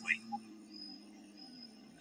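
Faint documentary background music, a few soft sustained tones, one low and one high, fading toward near silence.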